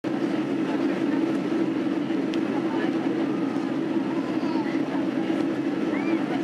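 Steady in-flight cabin noise of a Boeing 767-300 airliner: engine and airflow noise heard from a window seat over the wing, with the wing spoilers raised as speedbrakes during descent.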